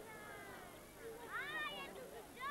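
A drawn-out animal cry in the second half, rising and then falling in pitch, over faint background noise.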